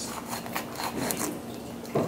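Kitchen knife scraping faintly against a whole avocado as the blade is drawn around it through the skin to the pit, a few short rasps.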